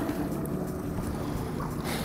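Fishing boat's engine running steadily at trolling speed, a low even drone mixed with wind and water noise.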